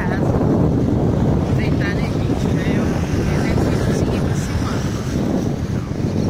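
Wind buffeting the microphone outdoors: a loud, steady low rumble, with faint voices under it.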